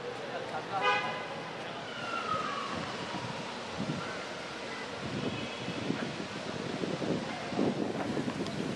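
Busy street ambience with people's voices and a short car horn toot about a second in.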